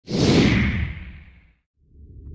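Whoosh sound effect from an intro logo animation: a loud sweep that falls in pitch and fades out over about a second and a half. After a brief silence, a low rumble starts near the end.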